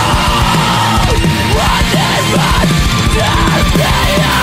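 Loud heavy rock song, distorted band playing at full volume with yelled vocals over it.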